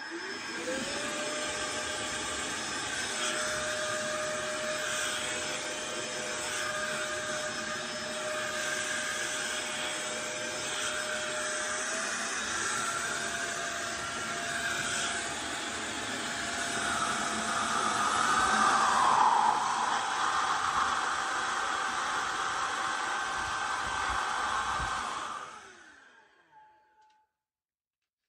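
Roedix R7 cordless air duster's motor running with a steady rush of air and a high whine that rises as it spins up. Its pitch steps up twice partway through. It then winds down and stops near the end.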